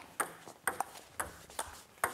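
Table tennis rally: the ball clicks sharply off the table and the bats about seven times in two seconds, each a short, high 'pock'.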